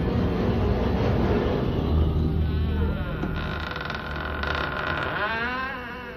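Horror-soundtrack sound effects: a heavy low rumble, then a fluttering, pulsing layer with tones that glide down and back up over the last couple of seconds, fading near the end.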